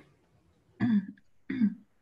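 A person gives two short coughs, the second about two-thirds of a second after the first.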